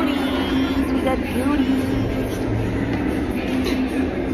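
Indistinct voices over a steady low hum.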